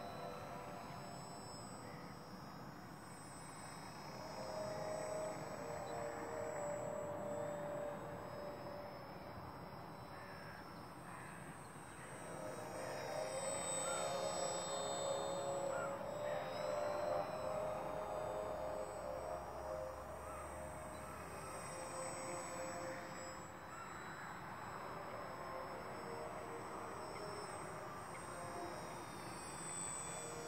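Music playing, with the buzz of a radio-controlled aerobatic model airplane's motor over it, its pitch rising and falling as the plane passes to and fro.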